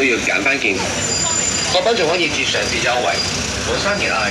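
Busy city sidewalk: passers-by talking over the steady rumble of road traffic.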